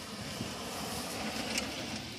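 A Ram pickup truck driving fast across a dry grass field, its engine and tyres heard from a distance as a steady, fairly faint noise.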